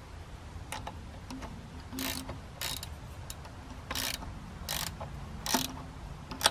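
A hand ratchet clicking in about five short bursts as a nut on the centre stud of the tractor's air cleaner is turned, with a few single light metal clicks in between.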